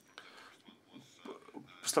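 A short pause in a man's speech, with only faint, low voice sounds in the gap; loud speech resumes near the end.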